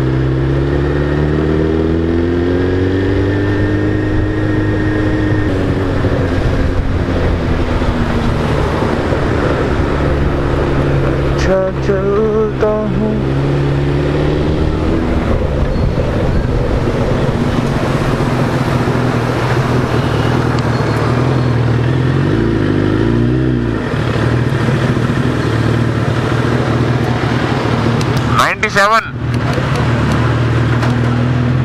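Suzuki Hayabusa inline-four engine running under the rider at town speed, its pitch rising and falling with the throttle, mixed with wind and road noise. There is a brief louder burst near the end.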